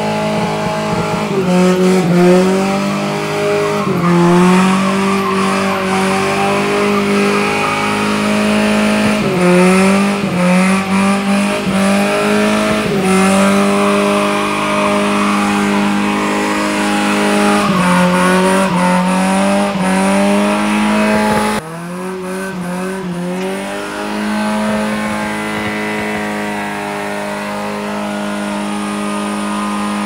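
Lifted Toyota pickup's 22R four-cylinder engine held at high revs during a burnout, with tyres squealing against the road. The revs sag and climb back again and again every few seconds. About two-thirds of the way through, the sound suddenly drops in level and turns duller, then steadies at high revs again.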